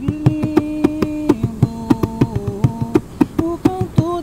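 Atabaque hand drum played in a quick, steady rhythm, with a singing voice holding long notes over it that step down in pitch about a second in.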